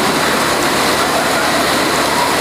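A loud, steady rushing noise with no pitch, like hiss or static, fills the pause between sentences.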